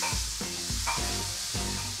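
Chopped vegetables sizzling in a hot frying pan as they are scraped in off a cutting board, with a steady hiss. Background music with a pulsing bass beat plays underneath.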